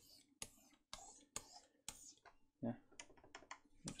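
Computer keyboard keys clicking: about a dozen quick, faint clicks at an irregular pace, with a short spoken "yeah" about two-thirds of the way in.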